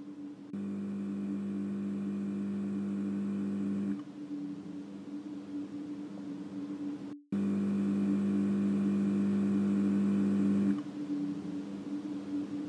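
Electroacoustic drone made from recordings of a dialysis treatment and an interview. A steady hum runs throughout, and twice a louder, deeper layered tone switches on, holds for about three and a half seconds and cuts off abruptly, with a brief dropout to silence just before the second one.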